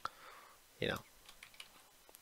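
A sharp computer mouse click, then a few faint clicks.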